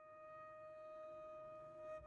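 Faint playback of sampled solo strings from the Spitfire Solo Strings library: one soft, high note held steady, with a quiet low texture underneath and a slight swell near the end.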